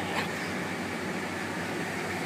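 Steady mechanical hum and hiss of refrigerated display cases and store ventilation, with one faint knock about a fifth of a second in.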